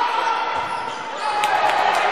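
A handball bouncing on the hard sports-hall floor, two sharp bounces in the second half, with voices going on in the hall.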